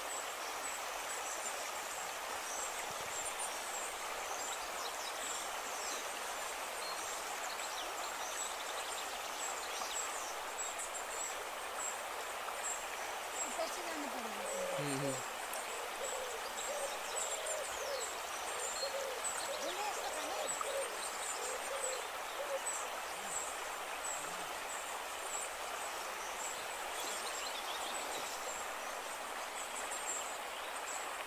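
Shallow forest stream flowing steadily over stones, with faint high chirping above it. About halfway through comes a falling call, then a run of short low calls.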